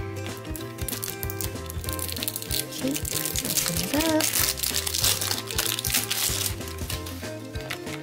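Thin plastic shrink-wrap crinkling as it is peeled and torn off a plastic egg-shaped capsule, over background music.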